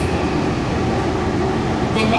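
Tokyo Metro 18000 series subway car running, heard from inside the car: a steady low rumble of wheels and car body. Its Mitsubishi SiC inverter drive is so quiet that no motor whine stands out.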